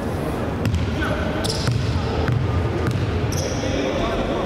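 Basketball bounced several times on a hardwood gym floor: a free-throw shooter's dribbles at the line before the shot.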